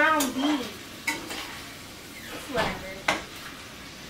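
Chopped steak for a Philly cheesesteak sizzling in a frying pan on a gas stove, with a spatula scraping and clicking against the pan now and then; two sharper clicks come about two seconds apart.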